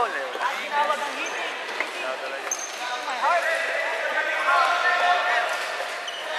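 Floorball game on a wooden gym floor: sneakers squeaking on the court, a few light clicks of sticks and ball, and players calling out, echoing in the hall. The squeaks and calls come thickest in the second half.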